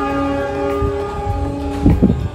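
Background music: a sustained chord of several steady tones, then a low thump near the end.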